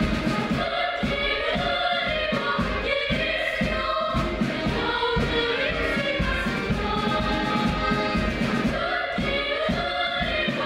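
A choir of young girls singing together to accordion accompaniment, over a steady beat.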